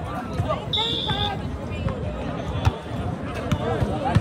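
Spectators talking and calling out around an outdoor volleyball court, with a short high whistle about a second in and a couple of sharp volleyball thuds later on.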